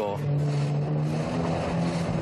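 Jet ski engine running at speed, its pitch rising slightly, over a steady rushing hiss.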